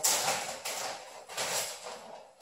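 Clear plastic packaging bag rustling and crinkling as it is handled, with louder crackles at the start, about half a second in and about a second and a half in.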